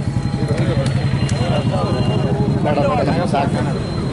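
Several people talking among themselves over a vehicle engine running steadily.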